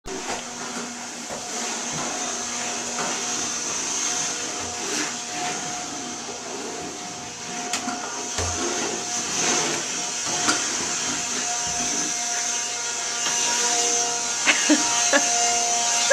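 Handheld cordless Dustbuster vacuum running steadily with a high whine and hiss, a little louder in the last few seconds, with a few sharp clicks near the end.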